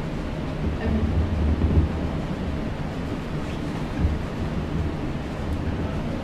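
Low, steady rumble of room and microphone noise with a few soft, dull thumps, and no speech.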